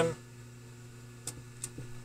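Faint steady electrical hum from the radio and amplifier bench, with two short clicks a little past the middle.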